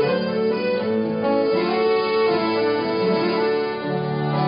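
Accordion and two acoustic guitars playing an instrumental passage of a folk-country song, the accordion holding long sustained notes over the strummed guitars.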